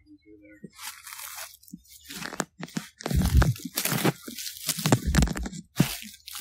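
Footsteps crunching through dry fallen leaves: irregular crunches that start under a second in and grow louder and heavier, with low thumps about three seconds in and again near five seconds.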